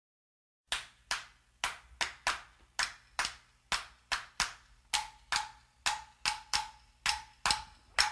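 Sharp, dry percussive clicks in an uneven rhythm, about two to three a second, opening a music track. From about five seconds in, each click carries a faint pitched ring.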